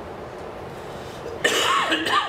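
Steady room hiss, then about one and a half seconds in a man clears his throat, short and loud.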